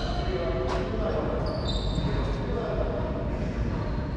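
A racquetball bounced on the hardwood floor of a racquetball court as the server gets ready to serve, with one sharp knock under a second in.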